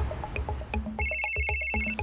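A telephone ringtone: a pulsing electronic ring of two high tones, starting about halfway through and stopping just before the end, over background music with a steady beat.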